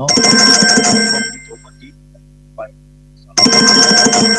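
A telephone ringing twice, each ring a little over a second long, about three and a half seconds apart: a call coming in on the call-in line. A low steady hum runs between the rings.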